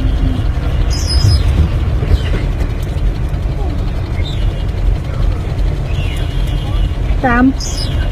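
Steady low rumble of a vehicle driving, heard from inside its cab, with a few short high chirps sweeping downward.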